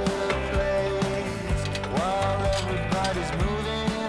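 Background music with a steady beat and sustained, gliding melody notes.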